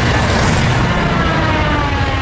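A propeller warplane's engine diving past, its whine falling steadily in pitch over a loud, dense rumble.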